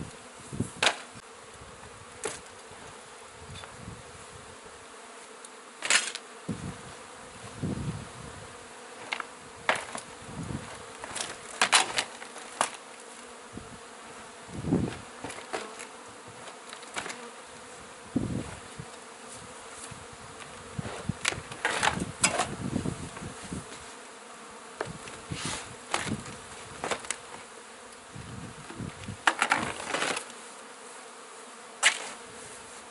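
Honeybees from a large, disturbed colony buzzing steadily in the air, with scattered sharp knocks and cracks of old wooden siding boards being pried and pulled off the wall.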